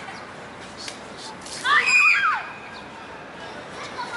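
Children shouting at play in the background, with one loud high-pitched shriek that bends up and down about two seconds in, over steady outdoor background noise.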